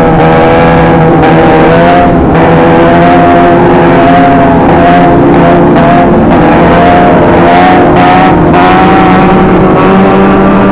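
Sportbike engines running hard at high revs, their pitch wavering slightly with the throttle, very loud and continuous.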